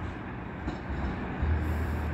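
Low rumble of an approaching GO Transit passenger train, growing louder about one and a half seconds in.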